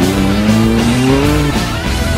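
Heavy rock music with a rally car's engine revving over it. The engine's pitch rises for about a second and a half, then drops away.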